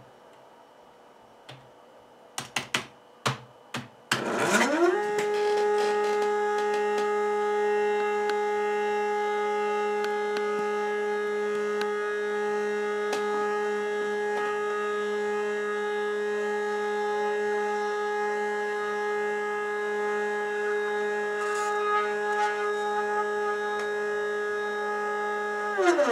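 Stepper motors of a hobby CNC machine driving the bed along its lead screw: a few clicks, then a whine that rises in pitch as the motors speed up about four seconds in, holds one steady pitch through a long traverse, and falls away as the move ends.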